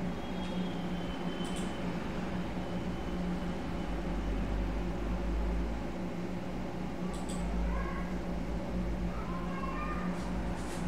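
Steady low hum and room noise from a computer setup, with two sharp mouse clicks, one about a second and a half in and another about seven seconds in. Faint rising tones come in near the end.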